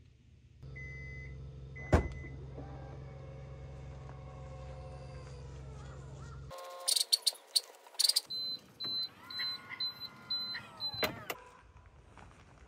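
Kia EV3's power tailgate at work: a whirring motor under short electronic warning beeps, with a loud clunk about two seconds in. In the second half come clicks and a run of about six quick beeps while the motor whirs, ending with a click.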